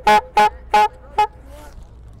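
Clown's hand-squeezed bulb horn honked in a quick series of short toots, all at one pitch, over the first second and a half.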